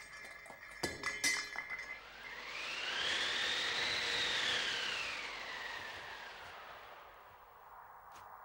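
Cartoon sound effects: a scatter of glassy clinks and tinkles of debris in the first two seconds, then a long whistling tone that rises and falls in pitch as the character sails through the air, fading out near the end.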